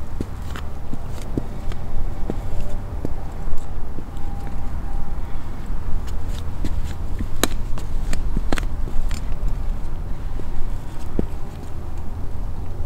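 Boots shifting and stepping on an Evolved Hunter Design Group Stalker metal tree-stand platform strapped low on a tree trunk, giving scattered short knocks and clicks, two of them sharper a little past the middle. A steady low rumble lies under it all.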